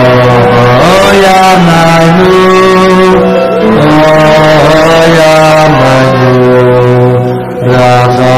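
Men's voices singing a slow Hasidic niggun together, long held notes that glide and step from pitch to pitch, loud.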